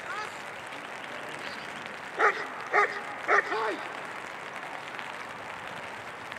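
German Shepherd barking three times in quick succession, about half a second apart, during bite work.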